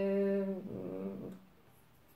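A woman's drawn-out hesitation sound, a held vowel filler at her speaking pitch lasting about a second and trailing off, followed by quiet room tone.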